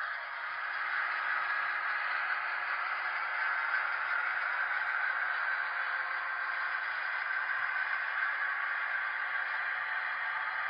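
HO-scale EMD SW1500 model switcher locomotive running along the track with a boxcar in tow: a steady, even running noise with a faint hum underneath.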